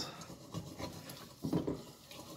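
Scrubbing a pan in the sink to loosen baked-on food residue: uneven rubbing and scraping, with a couple of louder strokes.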